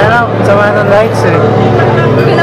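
People talking close by, their voices overlapping, over a steady low hum. No music is playing, as before a band's set.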